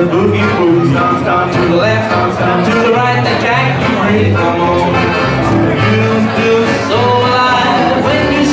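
Small acoustic string band playing a swing tune live: an upright double bass moves between notes beneath steadily strummed acoustic guitar chords, with a melody line on top.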